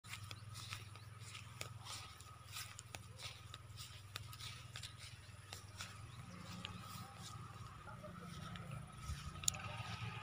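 Faint outdoor background: a low steady hum with light, irregular clicks and rustles of someone walking over field ground.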